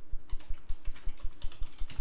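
Computer keyboard typing: a quick, steady run of keystrokes.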